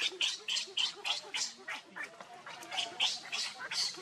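Newborn pigtail macaque infant crying in distress, a rapid run of short high squeals at about four a second, left alone on the ground.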